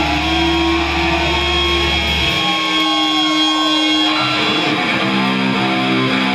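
Heavy metal band playing live, with distorted electric guitars over bass guitar. A low held note cuts off about two seconds in. A new riff of repeated chords starts around four seconds in.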